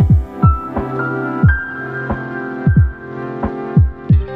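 Background music: held chords and a high sustained note over a deep electronic bass drum. The drum hits fall quickly in pitch and come in an uneven beat.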